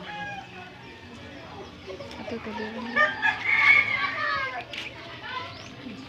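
A rooster crowing once, a long drawn-out call about three seconds in, over faint background voices.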